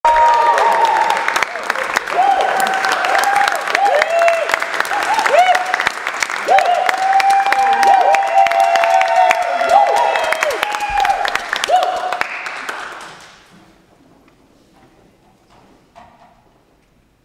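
Audience applauding with voices cheering over the clapping. It dies away about thirteen seconds in.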